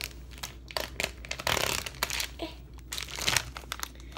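Plastic food packaging crinkling and crackling in irregular bursts as sliced turkey lunch meat is handled, busiest about one and a half seconds in.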